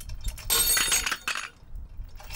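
A 3D-printed PLA tensile test bar pulled to failure in a chain-and-hook rig. A sudden snap about half a second in is followed by about a second of metallic clinking from the hook and chain, then a single click near the end.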